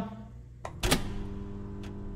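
A small click, then a heavier clunk about a second in, followed by a steady low electrical hum and another small click near the end.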